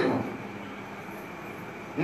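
Steady background noise in a pause in speech, with the echo of the last spoken word dying away in the first quarter second.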